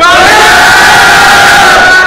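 A team of boys shouting together in unison, one long drawn-out call that rises in pitch at the start and is held until near the end.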